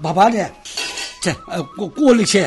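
Light clinking and clatter under people talking, with a faint steady ringing tone starting about halfway through.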